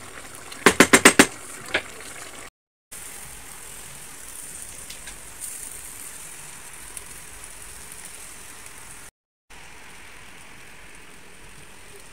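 A wooden spoon knocks against an aluminium pot about six times in quick succession, then food sizzles with a steady hiss. The hiss is broken twice by short dropouts.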